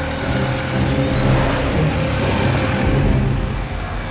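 Background music score over the steady noise of street traffic.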